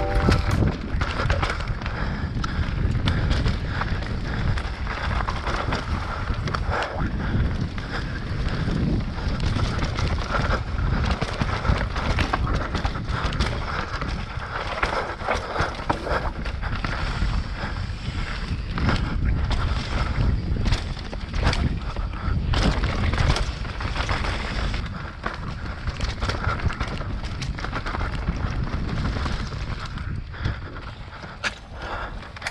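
Mountain bike riding fast down a dirt singletrack: wind rushing over the camera microphone with the rumble of knobby tyres on dirt, and frequent rattles and clicks from the bike over roots and rocks.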